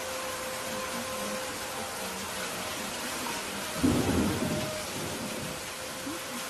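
Steady rain with a rumble of thunder about four seconds in, over faint held tones.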